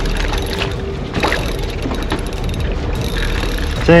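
Large spinning reel under load on a bent rod, its mechanism clicking and ratcheting as a hooked fish is played on a light drag, over a steady low rumble of wind and water.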